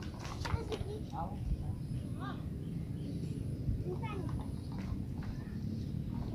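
Faint children's voices talking now and then over a steady low rumble, with a few light clicks in the first second.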